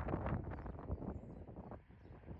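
Faint wind buffeting the microphone, a low, uneven rumble that dies away near the end.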